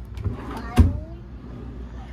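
A dresser drawer pushed shut with a single sharp thump a little under a second in.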